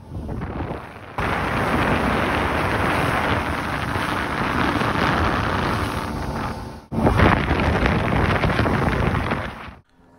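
Loud, steady rush of wind buffeting the microphone, with water noise, on a small boat underway across open water. It breaks off suddenly about a second in and again just before seven seconds, then fades out near the end.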